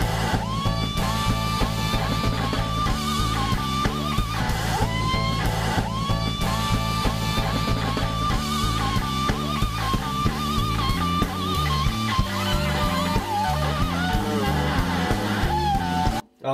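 Live electric slide guitar solo over a full band with drums and bass. The slide glides up into long held high notes with wide vibrato, phrase after phrase.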